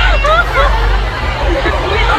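Several people's voices chattering over each other, with a steady low hum underneath.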